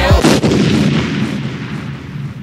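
The beat and rapping cut off at once and a loud blast-like sound effect, like a gunshot or explosion, rings out, its noisy rumble fading steadily away over the next couple of seconds.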